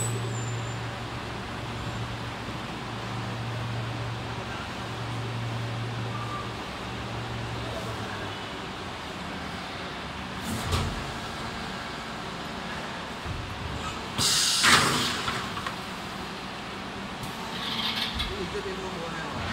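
Injection moulding machine running a preform moulding cycle with the mould closed: a steady low hum for the first eight seconds or so, then a single knock about ten and a half seconds in. About fourteen seconds in comes a loud burst of hiss, the loudest sound, and near the end the mould opens.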